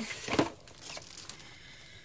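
Rustling and crinkling as small items and packaging are handled, with a short sharp sound early on, fading away after about a second and a half.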